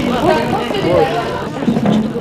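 Crowd chatter: many children and adults talking at once, their voices overlapping so that no single phrase stands out.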